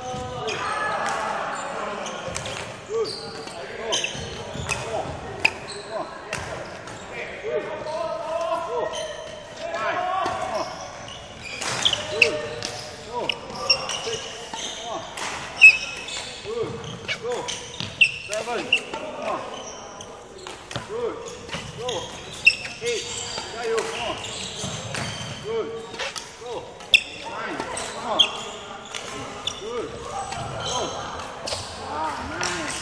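Badminton racket strikes on shuttlecocks repeating through a drill, often about a second apart, with sneaker squeaks on the hall floor and the echo of a large hall.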